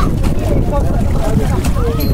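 Water splashing in a small above-ground pool as children kick and paddle, under a steady low rumble of wind on the microphone. Children's voices call out faintly.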